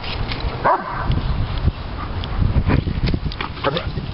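A Doberman Pinscher vocalizing in excitement: a short high whine about a second in, then a few sharp barks near the end, over a steady low rumble.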